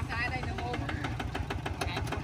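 Kubota ZT140 single-cylinder diesel engine on a walking tractor idling, with a rapid, even beat of firing strokes.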